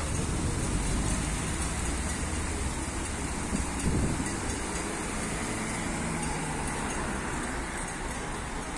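Street traffic noise: motor vehicle engines running with a steady low hum, and a brief louder bump about four seconds in.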